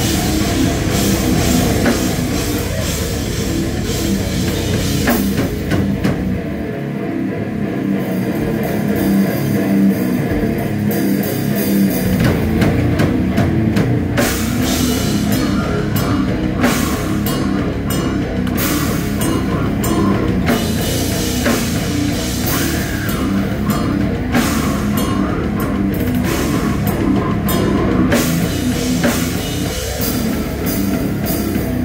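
Brutal death/slam metal band playing live: drum kit and heavily distorted guitars, loud throughout. About six seconds in the cymbals drop out for a couple of seconds before the full band comes back in.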